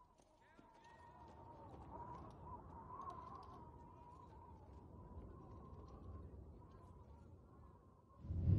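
Near silence: a faint low background with a thin, wavering held tone, swelling slightly in the middle.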